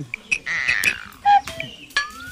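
An arrow shot from a bow at a target board: sharp clicks from the string's release and the arrow's strike, with a short, loud tonal sound about a second and a half in.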